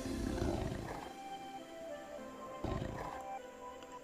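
Tiger roar sound effect played by Google's 3D AR tiger on a phone, over calm electronic background music. A low growl fades away during the first second, and a second, shorter one comes near three seconds in.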